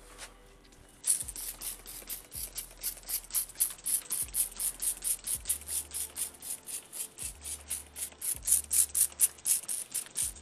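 Hand-pumped trigger spray bottle squirting apple cider vinegar and apple juice onto smoking beef, in a quick run of hissing squirts, several a second, starting about a second in.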